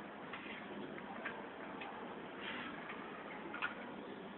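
Faint, irregular light clicks and taps over a steady background hiss. The sharpest click comes near the end.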